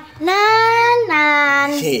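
A young girl's long, drawn-out whining wail on one word. It is held high, then drops lower about halfway through and trails off near the end.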